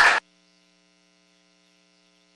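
Room sound cuts off abruptly just after the start, leaving near silence with a faint steady electrical hum.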